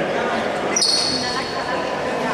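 A basketball bounces once on the hardwood court about a second in, a sharp knock with a short high ringing after it, over voices echoing in a large gym.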